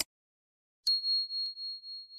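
A short click at the very start. About a second in comes a bell ding sound effect: one high ringing tone that wavers as it slowly fades.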